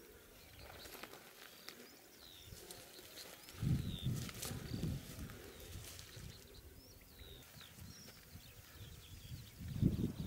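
Faint outdoor ambience with small birds chirping here and there. A short muffled low rumble comes about three and a half seconds in and again near the end.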